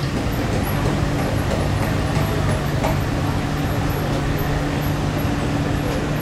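Diesel engine of heavy lifting machinery running steadily at a constant low hum, as the crane works on the salvage.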